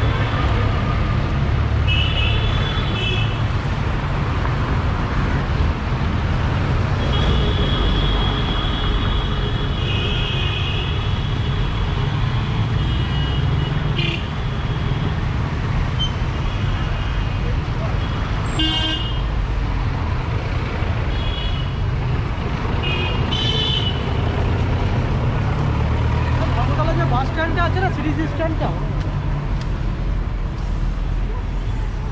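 City street traffic: engines running in a steady rumble, with frequent vehicle horns honking, mostly short toots and one longer stretch of honking about seven to twelve seconds in.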